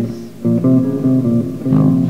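Guitar with bass playing a short instrumental phrase between sung lines. The sound dips briefly at the start, then the notes come back in, changing every quarter to half second.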